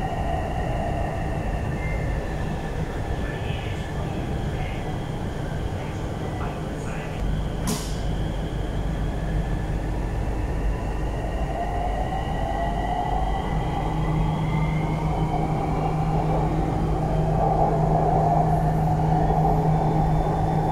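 Inside a Bangkok MRT Blue Line metro train in motion on an elevated track: steady running noise with a faint, slightly drifting electric whine. There is one sharp click about eight seconds in, and the noise grows louder toward the end.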